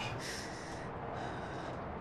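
A person's short breath through the nose near the start, over a steady low background hiss.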